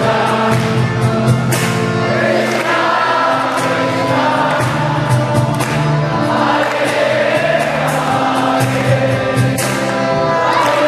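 Kirtan: a group of voices singing a devotional chant together over sustained steady instrumental tones, with sharp percussion strokes coming along regularly throughout.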